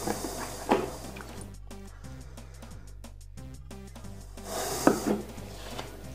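Quiet background music, with handling sounds over it: a light knock about a second in, then a cloth rubbing over a fountain pen with another knock near the end as the freshly filled pen is wiped clean of ink.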